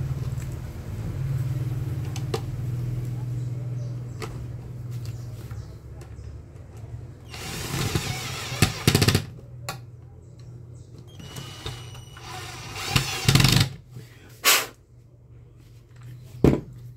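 Cordless drill-driver driving two small screws into the plastic housing of an Arno steam iron. There are two short runs: one of about a second and a half, about seven seconds in, and a shorter one near the end, followed by a couple of sharp knocks.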